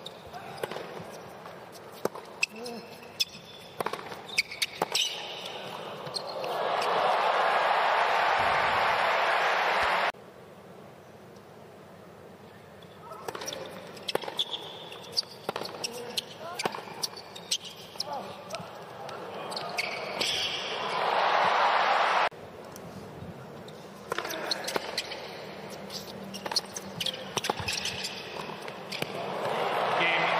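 Tennis rallies on a hard court: repeated sharp racket strikes and ball bounces, with crowd applause and cheering swelling up after points and cutting off suddenly.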